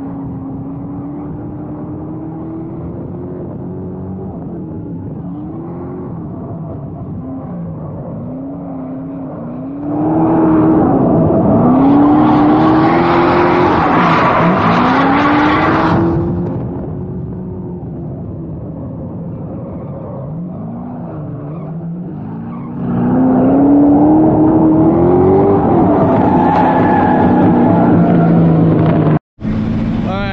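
Drift car engine heard from a camera mounted on the car's body, its revs sweeping up and dropping back again and again as the car is thrown through corners. Two louder stretches of hard throttle with added rushing noise come about ten seconds in and again from about twenty-three seconds. The sound cuts off abruptly near the end.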